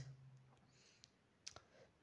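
Near silence: a faint low hum dies away within the first second, then one faint click about one and a half seconds in and a weaker one just before the end.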